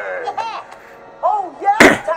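Short sliding vocal sounds, then a single sharp, loud bang near the end.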